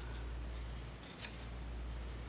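Hard plastic parts of a small transformable toy figure being worked by hand while the tail is pulled off, with one short plastic scrape or click about a second in, over a low steady hum.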